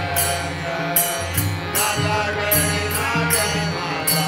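Men singing a Hindu devotional bhajan, with a steady percussion beat about twice a second.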